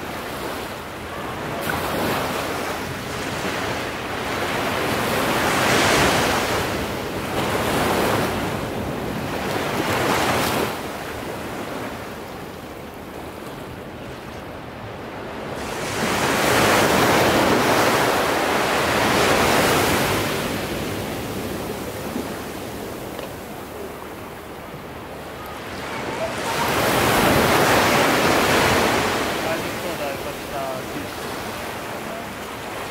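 Ocean surf breaking against sea cliffs, a steady wash that swells and falls back in slow surges. The loudest surges come about six to ten seconds in, around the middle, and near the end.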